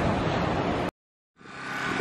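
Steady rushing surf and wind noise on the shore, cut off abruptly about a second in, then silent for half a second before fading back up.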